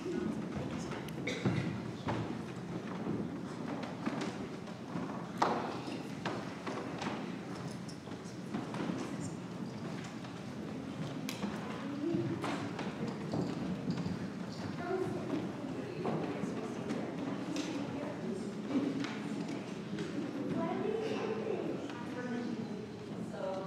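Footsteps and scattered thumps and knocks of a group of children and adults moving to the front of a church sanctuary, with low murmuring voices that grow in the second half.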